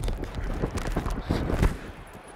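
Irregular thumps and rustling picked up by a football player's body-worn microphone as he moves, the knock of his footfalls and pads coming through the mic.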